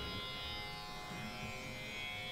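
Steady instrumental drone of several held tones, of the kind a tanpura gives to set the pitch for Indian singing.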